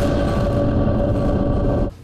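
News channel logo sting: a loud, dense rushing sound effect with a few steady held tones under it, cutting off just before the end.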